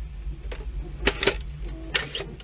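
Hard plastic clicks and knocks as a Nerf Mega magazine is pushed into the 3D-printed magwell of a Caliburn foam blaster: two sharp clicks about a second in and another near the end.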